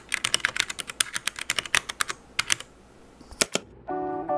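Computer-keyboard typing: a quick run of clicking keystrokes that stops about two-thirds of the way through, then two more keystrokes near the end.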